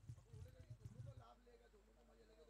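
Near silence of an outdoor ground: faint distant voices, with a few soft low thuds in the first second or so.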